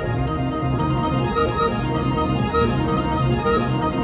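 Electronic keyboard with an organ-like tone playing quick, evenly repeating note patterns over a held bass line, in minimalist style.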